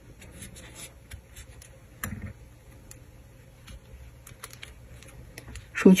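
Faint, scattered light clicks and rubbing from a crochet hook and yarn being worked by hand, close to the microphone, with a soft bump about two seconds in.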